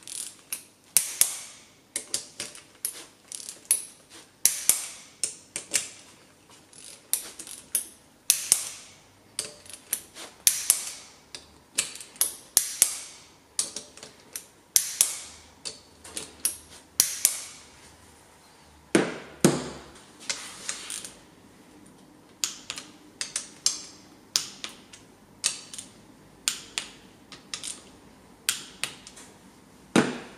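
Ratchet-head torque wrench clicking as it tightens camshaft-area bolts on a Subaru cylinder head. The sound comes in short runs of quick ratchet clicks, stroke after stroke, with one heavier knock about two-thirds of the way through.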